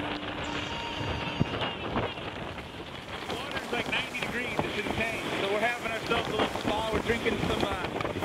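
Strong wind buffeting the microphone and breaking waves rushing along the hull of a sailboat heeled over in rough seas. Crew voices call out through the wind in the middle.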